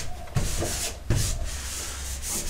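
A hand rubbing across an adhesive decal, smoothing it flat onto the surface in sweeping strokes, with two fresh strokes about a third of a second in and just after a second.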